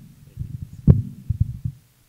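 Handheld microphone being handled and lowered: a few low thumps and bumps, the loudest about a second in.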